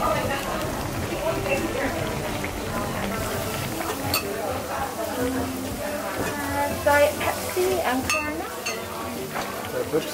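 Voices chattering around a dining table, with a ladle stirring in a pot of stew on a portable gas burner and a few sharp clinks of metal and dishes.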